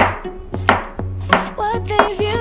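Chef's knife chopping avocado on a wooden cutting board, a series of quick knocks on the board, over background music with a steady beat.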